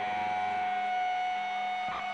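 A live band's final chord ringing out: several steady held tones sustaining without any new notes or beat.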